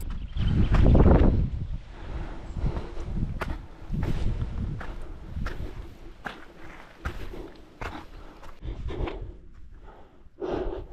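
Footsteps of a hiker climbing a muddy, grassy trail, uneven steps falling about once or twice a second, with a brief louder rush of noise about a second in.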